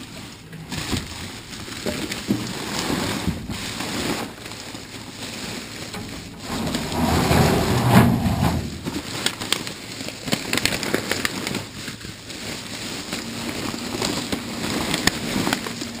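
A large clear plastic trash bag rustling and crinkling as it is grabbed and shifted. A louder, heavier stretch of rustling comes about seven seconds in as the heavy bag is pulled at.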